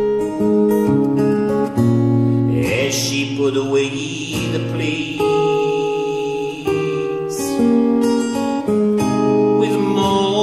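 Acoustic guitar strummed through a folk song, with held chords ringing between strokes and a man singing at times.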